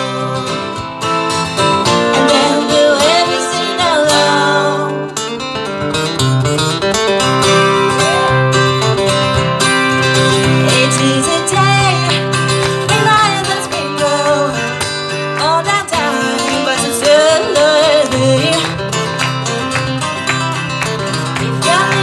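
Two acoustic guitars strummed together in a folk song, with a voice singing over them.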